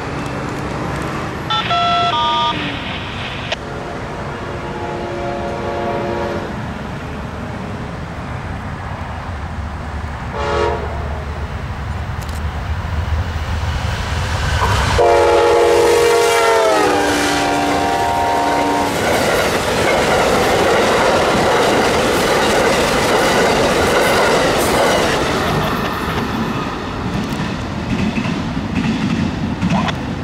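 A GE P42DC passenger diesel locomotive sounds its Nathan K5LA five-chime horn as it approaches: long, long, short, long, the standard grade-crossing signal. The final long blast drops in pitch as the locomotive rushes past (Doppler effect). Then comes the rush and wheel clatter of the passenger cars going by at speed, fading away.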